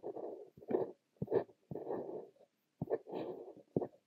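Fine-nib Montblanc Le Petit Prince fountain pen writing Korean characters on notebook paper. Short scratching strokes of the nib on paper alternate with small ticks where the nib touches down, with brief gaps between strokes.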